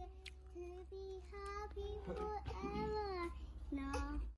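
A child singing softly in a high voice, holding long notes at much the same pitch in short phrases, with a few bending notes about halfway through.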